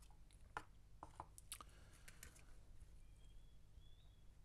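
Faint, scattered clicks and light taps of metal tweezers and fingers handling a small cardboard box and a cardboard tub, a handful in the first couple of seconds, then near silence.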